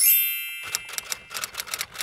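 Subscribe-card sound effect: a bright chime rings and fades over about half a second, then a quick run of typewriter-like clicks, several a second.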